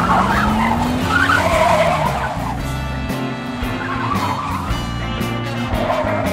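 Car tyres screeching several times over a car engine that revs up during the first second or so, with background music underneath.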